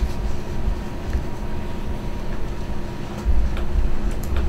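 Low, irregular rumbling thumps of a video camera being handled and carried, over a steady room hum.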